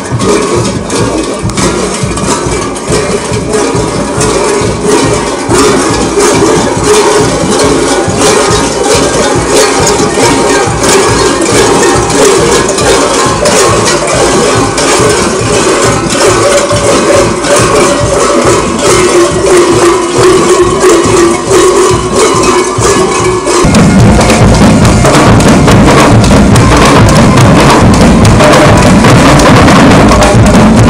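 Parade band music played in the street: a quick, steady percussion beat with held tones running under it. About 23 seconds in it changes suddenly to louder drumming with a heavy bass drum.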